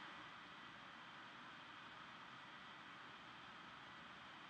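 Near silence: faint steady recording hiss.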